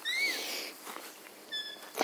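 Tiny puppy squeaking: a short high squeak that rises and falls right at the start, then a brief, flat, higher-pitched squeak about a second and a half in.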